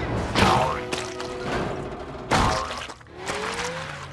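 Cartoon crash sound effects: two heavy thuds about two seconds apart, over background music, with a rising tone near the end.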